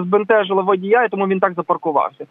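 Speech only: a person talking without a pause.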